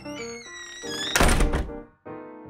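A door shutting with a loud thunk about a second in, over background piano music that breaks off just before the end.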